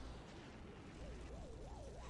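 Very quiet, with a faint warbling tone that wobbles up and down about three times a second and slowly climbs in pitch.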